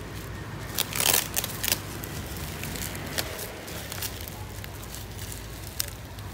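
Plastic bubble wrap and packing tape crinkling and crackling as a wrapped parcel is handled and pulled open. The sharpest crackles come about a second in.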